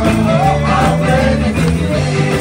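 Live church worship singing: several singers on microphones with the congregation joining in, amplified and carried over steady instrumental backing.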